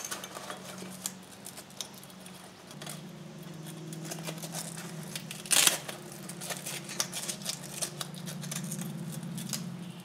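Handling noise from a fabric frame bag being fitted and strapped to a bicycle's top tube: scattered small clicks and rustles, with one short rasp about five and a half seconds in. A steady low hum runs underneath.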